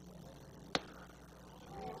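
A single sharp click about three-quarters of a second in, over a faint steady hum.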